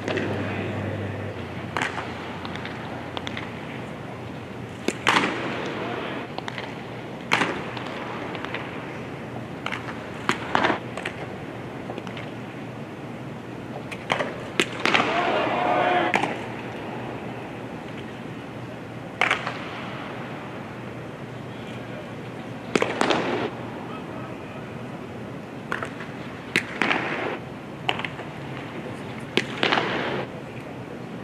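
Sharp pops of pitched baseballs arriving at the plate, about nine spread a few seconds apart, over a steady murmur of stadium crowd noise.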